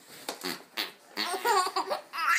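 A baby laughing: a few short breathy bursts, then a longer, louder run of laughs in the second half.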